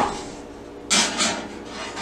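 Rubbing, rustling handling noise in a short burst of a few quick strokes about a second in.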